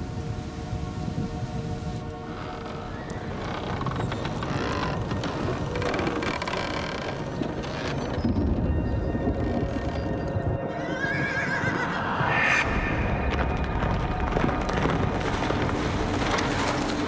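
Background music, with a horse whinnying once, a wavering call about eleven seconds in.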